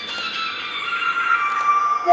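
Music for a belly dance veil routine: a quiet passage of high held notes that grows steadily louder.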